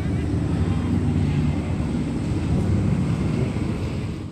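Four-cylinder speedway sedan engine running on a dirt track, a steady low drone that swells slightly now and then with the throttle.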